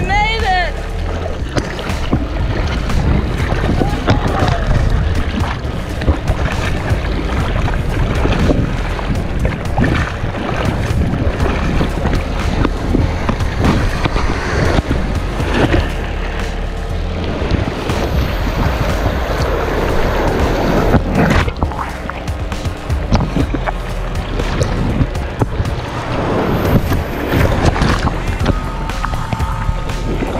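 Background music over the sound of water sloshing and splashing in the surf around a camera held low in the waves.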